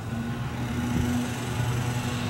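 A steady low hum over light background noise, even throughout with no sudden sounds.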